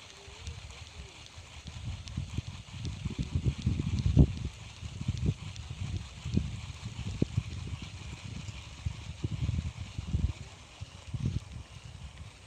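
Wind buffeting the microphone in irregular low rumbles that swell and fade, over a faint steady high hiss of outdoor ambience.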